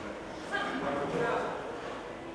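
A person's voice calling out for about a second, starting about half a second in.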